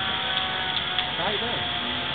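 Indistinct voices of bystanders talking, over a steady background hum.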